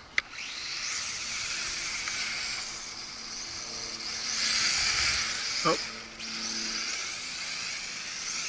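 Small quadcopter drone's motors and propellers whining at full throttle as it punches up off the ground and climbs. The whine swells about five seconds in, drops off sharply just before six seconds, then picks up again.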